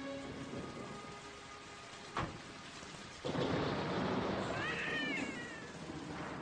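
Heavy rain and thunder on a film soundtrack: a sharp crack about two seconds in, then rain and thunder starting suddenly a second later and running loud. Near the end comes a brief high wail, an infant crying.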